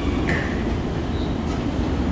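LIRR M7 electric multiple-unit train arriving and slowing along a covered station platform: a steady low rumble of wheels on rail, with a falling electric whine that fades out just after the start.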